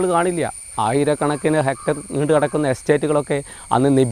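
A man talking in Malayalam, with a steady high-pitched insect drone behind his voice.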